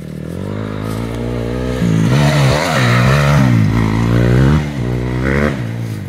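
A dirt bike engine coming closer and growing louder, then revving up and down several times as it rides hard past, before fading near the end.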